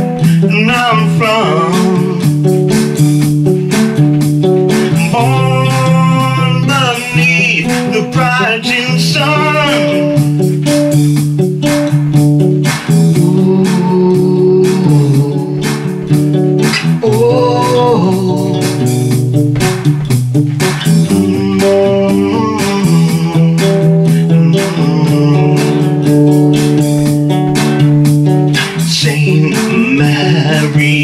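Guitar playing an instrumental passage of a folk-style song, with steady repeated low notes and a wavering melody line over it that comes and goes.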